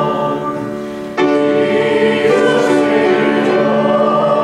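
Congregation singing a hymn together. A held note fades, then a new line begins about a second in and carries on steadily.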